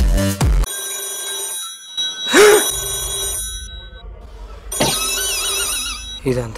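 Beat-driven background music stops under a second in and gives way to sustained electronic tones, with a loud sweeping burst about two seconds in. From about five seconds in comes a warbling electronic trill that rings like a phone.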